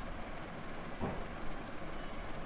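Quiet steady background noise with one soft tap about a second in.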